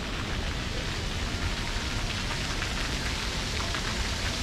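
Water from splash pad jets spraying and falling onto the wet play surface: a steady, rain-like hiss.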